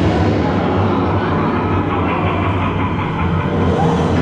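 Dark-ride show soundtrack playing in a blacked-out room: a loud, steady low rumble with no speech.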